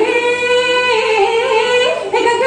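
A woman singing a Jeng Bihu song into a stage microphone, holding long notes that step to a new pitch about a second in and rise again near the end.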